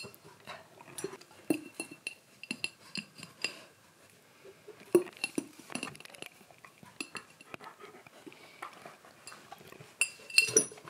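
A glass jar clinking and knocking on the carpet as a husky paws it and licks inside it: a string of sharp glass taps with a bright ring, thinning out about four seconds in before one loudest knock and more taps.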